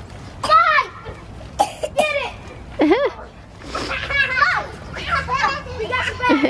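Young children shouting and squealing in short high-pitched cries while they play, one after another with brief gaps, and a couple of sharp knocks about two seconds in.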